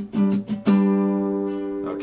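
Acoustic guitar playing a G major chord in tenth position, with a low G on the A string's tenth fret and D, G and B at the twelfth fret. The strings are picked one after another in a few quick plucks, then left ringing.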